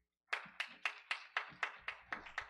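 Hand clapping in a steady, even rhythm, about four claps a second, starting a moment in.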